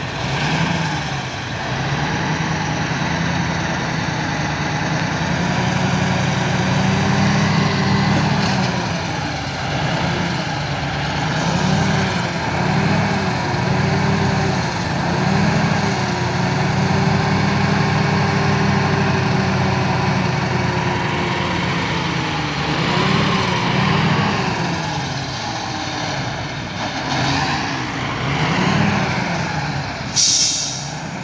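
Diesel engine of a garbage-laden dump truck revving up and falling back again and again as it strains to pull out of soft ground. The truck is stuck in the dump's soft soil and garbage.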